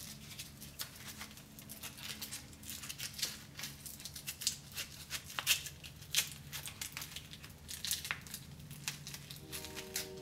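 Nylon webbing strap handled and pulled through the holes of a plastic platform pedal: scattered rustles, scrapes and small clicks. Soft background music with low steady notes runs underneath.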